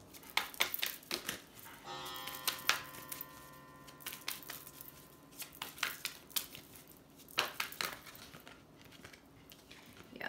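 Oracle cards being shuffled and handled, with irregular clicks and rustles of card stock.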